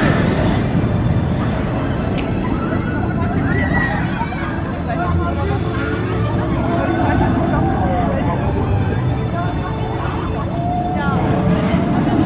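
A train on Der Schwur des Kärnan, a Gerstlauer Infinity Coaster, running along its steel track with a continuous rumbling roar and people's voices over it.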